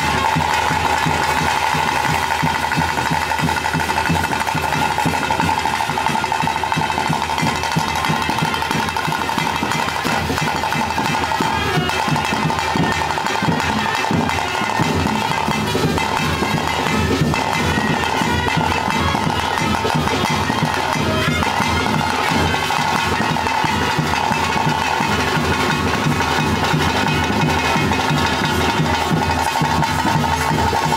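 Ritual music for a bhuta kola: a shrill reed pipe holding a steady high note over continuous fast drumming.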